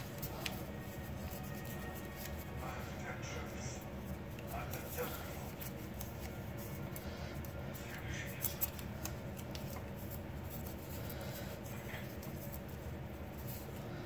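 Sheet of paper being folded and creased by hand: faint crinkling and rustling, with a couple of sharper crackles about eight seconds in. Faint voices and a steady hum in the background.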